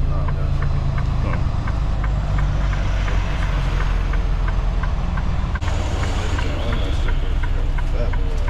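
Semi truck's diesel engine running at low speed, heard from inside the cab, a steady low rumble with a faint regular ticking about three times a second.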